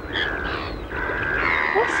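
A bird's whistled call, twice: a short steady note, then a longer one of about a second that rises slightly at the end.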